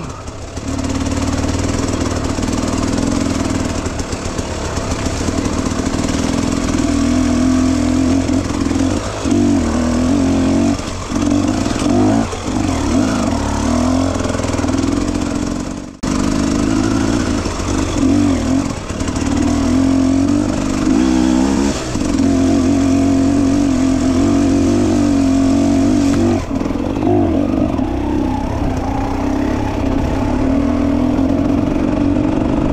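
Enduro dirt bike engine running while the bike is ridden, its note dipping and picking up again several times as the throttle is eased off and opened. The sound breaks off for an instant about halfway through.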